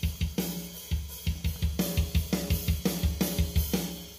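EZDrummer 2 software drum kit playing a fast metal groove: double kick drum, snare, hi-hat and crash cymbals in a steady rhythm. It stops shortly before the end.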